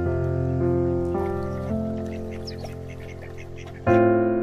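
Mallard ducks quacking a few times through the middle, under soft piano music whose chords fade away and strike again near the end.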